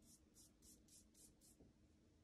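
Faint, soft swishes of a watercolour paintbrush stroked back and forth, about four strokes a second.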